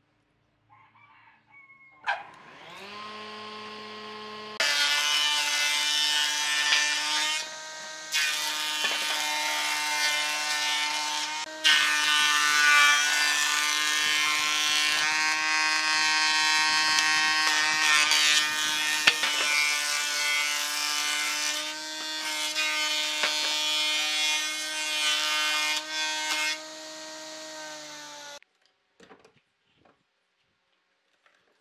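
Thickness planer switched on, its motor winding up in pitch to a steady whine. Boards are then fed through and the cutter head planes them loudly, with brief dips between passes. The machine sound cuts off near the end.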